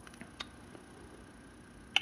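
Quiet room tone with a few faint clicks, the sharpest about half a second in.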